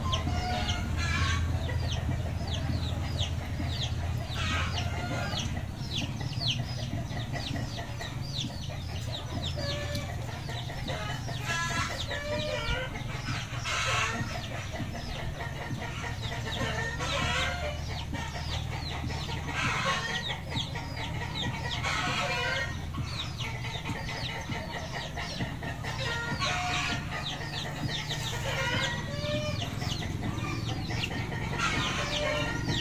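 Chickens clucking, with louder calls every few seconds. A rapid, continuous high chirping runs over a steady low hum.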